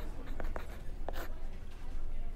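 Pen writing on a paper guest-check pad: a few short scratching strokes.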